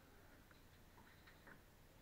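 Near silence, with a few faint scattered clicks and taps.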